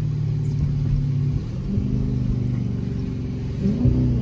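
Dodge Charger SRT 392's 6.4-litre HEMI V8, heard from inside the cabin as the car slows and downshifts: the engine note changes pitch partway through, and a quick rising rev blip near the end marks a downshift.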